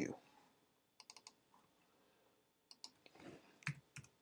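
Faint clicks of a computer mouse and keyboard as a value is entered into a software dialog box. A quick cluster of three or four clicks comes about a second in, then scattered clicks and key presses near the end.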